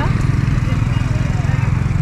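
City street traffic: a steady low engine rumble, with faint voices nearby.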